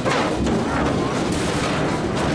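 Cartoon sound effect of a large barrel rolling across pavement: a steady rumble that starts suddenly.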